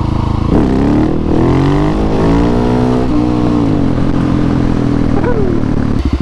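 Husqvarna 701 supermoto's single-cylinder engine revs up steeply about half a second in as the bike accelerates for a wheelie. It holds at high revs for a couple of seconds, then drops after about three seconds and runs on at lower revs.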